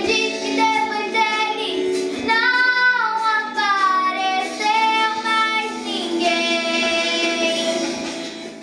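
A young girl singing a song, with long held notes that waver in pitch.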